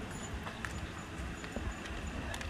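Footsteps on a paved roadside, a few separate steps over steady outdoor background noise. A faint high chirp repeats about three times a second.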